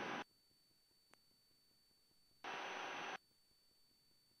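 Aircraft intercom or radio audio feed, gated almost to silence between transmissions. A faint click comes just after a second in, and a flat burst of hiss, under a second long, comes about two and a half seconds in, as the open mic or radio briefly passes noise with no words.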